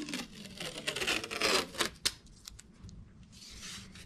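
Blue painter's tape being pulled off its roll: a series of short ripping pulls, then one longer, smoother pull near the end.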